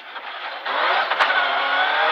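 Rally car engine heard from inside the cabin on a gravel stage, quiet at first, then revving up under acceleration about two-thirds of a second in, its pitch climbing steadily. A single sharp knock comes about halfway through.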